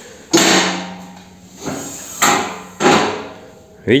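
Welded steel-tube hood frame of a homemade minitractor, hinged on a gas strut, being worked by hand: three sharp metallic clanks that ring out briefly, the last two close together. With the strut mounted upside down, the hood is said no longer to bounce.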